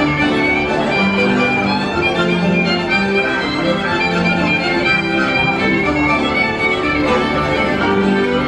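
Country band music led by a fiddle, playing steadily with held, ringing notes.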